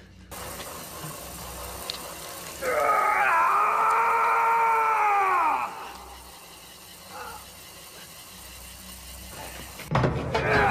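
A person's voice in one long drawn-out cry, held for about three seconds and falling in pitch at the end.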